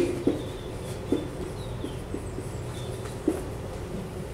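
Steady low hum from a film soundtrack heard through a room's speakers, with three brief soft knocks and a few faint high chirps.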